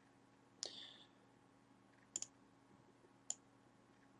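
Faint, isolated clicks of computer input: one click about half a second in, a quick double click just after two seconds, and another click a little after three seconds.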